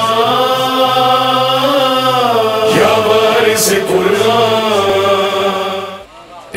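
A man's voice chanting a devotional invocation in long, held notes that glide slowly up and down. It fades away just before the end.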